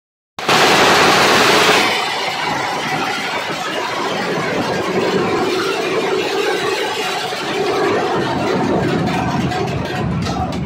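A Nashik dhol ensemble of large barrel drums beaten with sticks, playing together in a loud, dense, continuous roar that starts half a second in and is brightest for the first second and a half.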